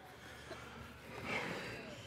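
Faint room noise with a brief breathy exhale a little past the middle, from a man straining on the bench press against a bar held down by helpers.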